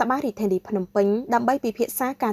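Speech only: a voice talking steadily, syllable after syllable.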